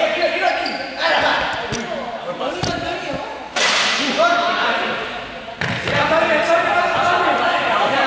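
Players' voices and shouts echoing in a large sports hall, with a few thuds of a ball hitting the floor in the first half. The sound changes abruptly several times where the footage is cut.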